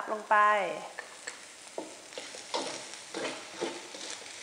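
Spatula scraping and tossing fried rice in a metal wok over a light sizzle of frying. Quick strokes about three a second in the second half as chopped carrot is stirred through the rice.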